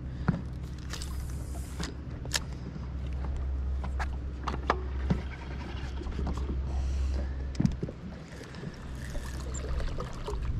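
Boat's electric trolling motor giving a low, steady hum that fades off about seven and a half seconds in, with a few sharp clicks and taps scattered over it.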